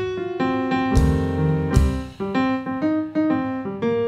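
Jazz shuffle played on a drum kit over keyboard chords, with the keyboard the loudest part. Two sharp drum hits with low booms land about one and nearly two seconds in.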